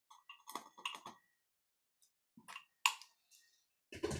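Small handling clicks and scrapes of lighting a candle in a glass jar: a quick cluster of clicks in the first second, a sharp click near three seconds in, and a duller knock at the very end.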